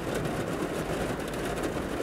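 Steady background noise: a low rumble with an even hiss above it.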